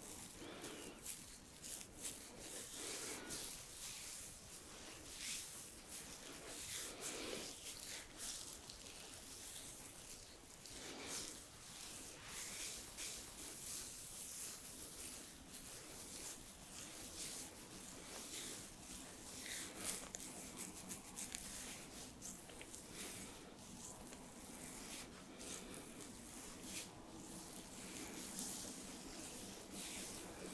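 Fingers working cleanser through a man's beard and over his skin: a soft, continuous rubbing and rustling of hands in beard hair, full of tiny crackles.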